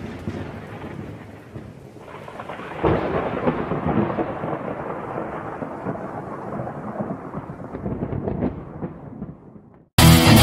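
Thunder rolling with rain. A fresh clap of thunder comes about three seconds in, and the rumble dies away just before the end.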